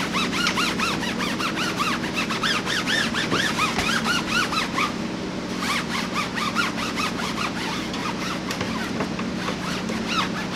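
Foam applicator, wet with thinly diluted tire dressing, squeaking against a tire's rubber sidewall as it is rubbed back and forth: a rapid series of short rising-and-falling squeaks, several a second, with a brief pause about halfway through.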